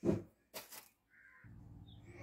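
A bird calling twice, about half a second apart, then faint room noise.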